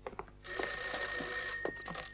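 Telephone bell ringing once, a single ring lasting about a second and a half, starting about half a second in.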